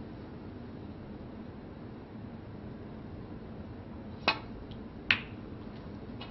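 Snooker break-off: a sharp click as the cue tip strikes the cue ball, then a second, louder click under a second later as the cue ball clips the pack of reds, followed by a few faint ball clicks.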